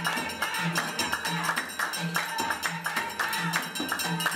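Amazigh folk percussion: a frame drum beating a steady low pulse about one and a half times a second, with dense hand clapping and a metal plate struck with a rod.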